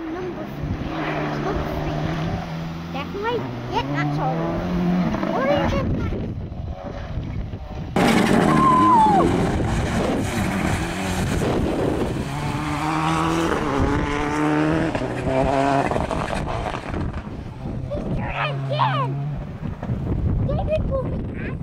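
Rally car engine revving hard on a gravel forest stage, its pitch climbing and dropping in steps with each gear change. It grows louder about eight seconds in.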